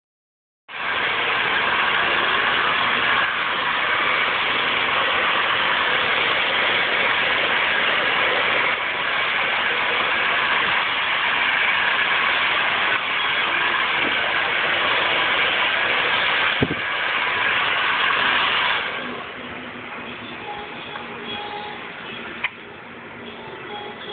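Hand-held salon hair dryer blowing on high, a loud steady rushing whir of its motor and airflow, then stopping about three-quarters of the way through.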